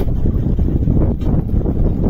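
Wind buffeting the microphone over the running single-cylinder engine of a Honda Bros 150 motorcycle being ridden on a rutted dirt road: a loud, steady low rumble.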